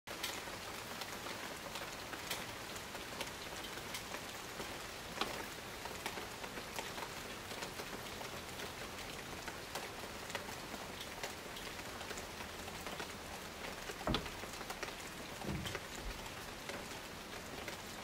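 Steady rain, an even hiss flecked with scattered close drop hits, the sharpest about five and fourteen seconds in. A brief low sound comes near the end.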